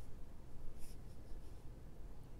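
Soft scratchy rustle of cotton yarn sliding over a Tunisian crochet hook as loops are picked up onto it, with the clearest brush a little under a second in.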